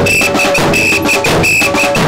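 A group of marching drums played with sticks in a fast, steady parade rhythm. A high, piping melody sounds in short repeated phrases over the drumming.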